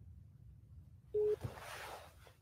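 A single short electronic beep from a phone, about a second in, followed by a soft breathy rush of noise that dies away.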